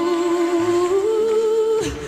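Slow unaccompanied singing or humming: long held notes over a lower held tone, the melody stepping up about a second in, then a short falling slide and a brief dip just before the end.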